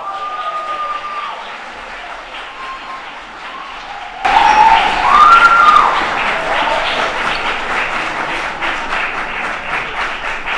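Audience applauding and cheering with scattered whoops, suddenly much louder about four seconds in.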